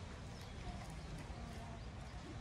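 Outdoor park ambience: faint chatter of distant visitors over a steady low rumble on the microphone.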